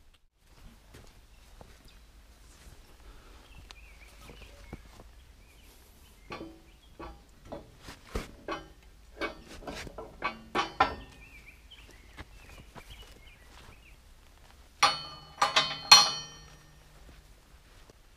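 Heavy steel pallet forks being handled and hung on a square-tube steel 3-point bracket: scattered metal knocks and clinks, then a louder cluster of ringing metal-on-metal clanks near the end.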